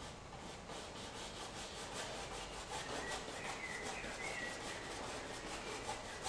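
Bristle brush rubbing oil paint into canvas in quick repeated back-and-forth strokes, several a second, blending the paint into a soft haze.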